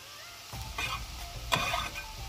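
Chopped red onion scraped off a cutting board into a skillet of Brussels sprouts and mushrooms frying in butter. A soft sizzle runs under two short scraping rustles, the second starting with a sharp tap about a second and a half in.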